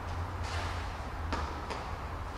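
Steady low hum of an indoor tennis hall, with three short sharp taps in the middle of it.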